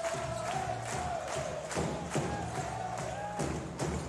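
Music playing over the PA in a basketball arena, with a regular beat, over crowd noise.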